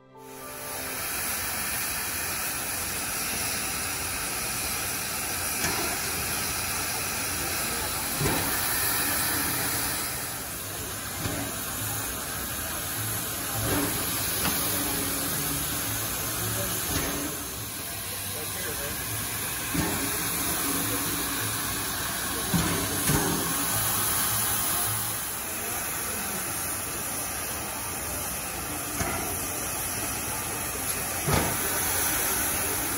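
A 1938 Baldwin-built 2-8-2 narrow-gauge steam locomotive standing under steam, giving off a steady hiss of escaping steam, with a few short irregular clicks.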